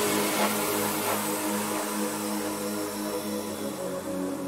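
Electronic music in a techno DJ mix at a breakdown: the kick drum has dropped out, leaving sustained synth drone chords under a hissing noise wash that slowly fades.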